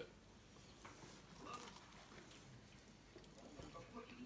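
Near silence with faint eating sounds: soft chewing and a few light clicks of a fork and plate.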